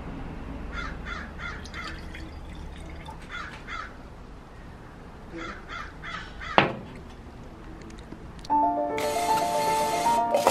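Crows cawing outdoors in three short runs of several caws each. About six and a half seconds in comes one sharp knock, the loudest sound, and music begins near the end.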